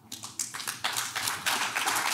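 Audience applause: a few scattered claps at first, thickening into steady clapping within the first second.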